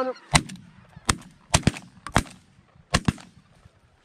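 A volley of shotgun shots, about seven blasts in quick succession with two fired almost together, as several hunters open up on a flock of incoming ducks. Geese honk in the background.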